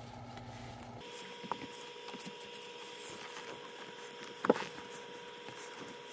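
Faint metallic clicks and taps as a bolt is wobbled out of the stock shifter's linkage, with one sharper click about four and a half seconds in. A faint steady tone runs underneath from about a second in.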